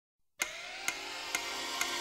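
Opening title music of a TV game show, starting suddenly about half a second in: sustained synthesizer tones with a sharp tick about twice a second, like a clock.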